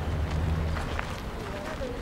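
Outdoor ambience: a steady low rumble with faint voices of people nearby, and a single faint click about a second in.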